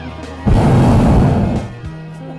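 A hot-air balloon's propane burner firing in one blast of about a second, starting suddenly half a second in and tapering off, over background music.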